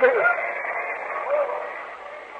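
A man's preaching voice trailing off at the end of a phrase and dying away in the hall's echo, on an old tape recording. A faint voice-like sound comes about halfway through.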